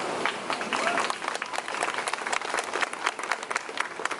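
A small crowd applauding, with separate hand claps heard through the applause.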